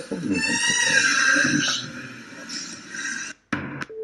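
A man's voice in a recorded Arabic conversation, rising high and drawn out for about a second and a half, then lower talk and a short burst near the end.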